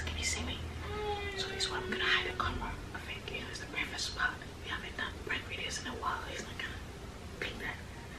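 A woman speaking softly in a whisper, with a drawn-out pitched sound lasting about a second and a half near the start.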